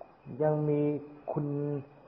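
Speech only: an elderly monk preaching in Thai, slowly, in two short phrases with long held syllables on a steady pitch.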